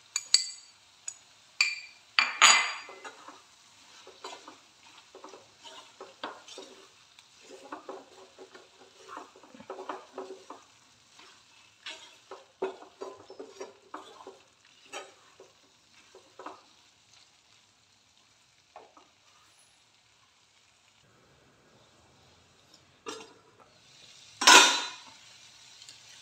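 Wooden spatula stirring and scraping a thick mushroom-and-pea curry around a stainless steel kadai over a faint sizzle. Several sharp knocks against the pan come in the first few seconds. The stirring strokes go on until past the middle, then pause for several seconds before one loud knock near the end.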